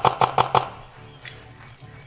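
A beer can hit with a machete bursts open: a quick run of about six sharp pops within a second as the beer sprays out. A fainter single crack follows.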